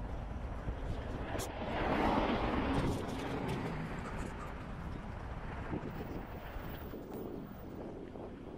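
Road traffic: a car passing on the road, its tyre and engine noise swelling about two seconds in and fading about a second later, over a steady low rumble of wind on the microphone.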